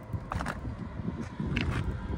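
Outdoor background noise on a phone microphone: a low rumble with a few faint short clicks about half a second and a second and a half in.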